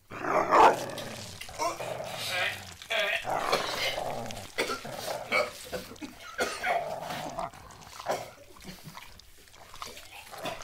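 A man gagging and retching on a mouthful of food, with a loud first heave about half a second in and irregular throaty noises that fade near the end.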